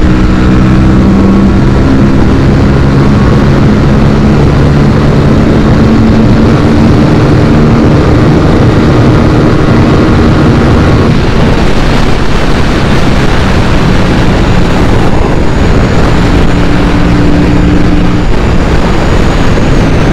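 Aprilia RS 457 parallel-twin engine running at high revs in sixth gear on a top-speed run, under heavy wind rush. The steady engine note weakens after about ten seconds as the bike slows.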